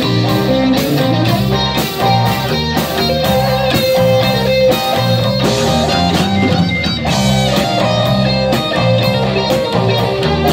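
Live rock band playing an instrumental passage: electric guitars over bass and a steady drum beat, with keyboard.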